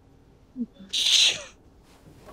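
A man's short low vocal sound, then a sharp, breathy exhale about a second in.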